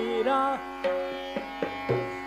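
Hindustani classical music in Raga Kukubh Bilawal, in a pause between sung phrases: several tabla strokes over sustained drone and melody tones.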